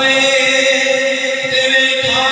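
A man's solo voice, unaccompanied and amplified through a microphone, chanting an Urdu naat (devotional poem) and holding one long steady note.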